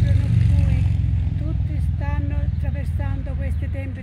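Low, steady rumble of a motor vehicle's engine, easing off toward the end, with a voice speaking over it.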